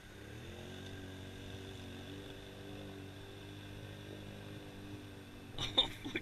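Distant ATV engine running steadily as the machine drives through a shallow river, a faint low hum that rises a little in pitch in the first second and then holds. Near the end a man's voice starts up close.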